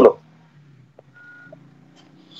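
Faint background over a voice-call line: a steady low hum, a couple of faint clicks, and one short high beep a little over a second in.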